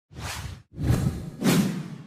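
Logo-reveal sound effect: a short whoosh, then two longer, louder swooshes in quick succession, the last one fading away.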